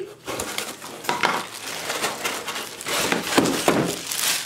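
Clear plastic packaging crinkling and rustling, with scattered clicks and knocks from cardboard packing, as a bagged vacuum head is pulled out of a box; louder in the second half.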